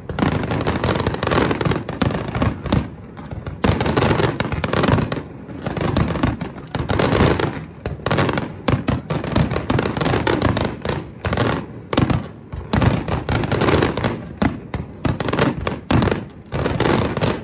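Aerial fireworks bursting in a dense, continuous run of overlapping bangs, with brief lulls between volleys.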